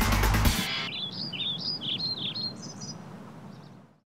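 Soundtrack music cuts off about half a second in, then a songbird sings a phrase of quick, rising and falling chirps, growing fainter and fading out near the end.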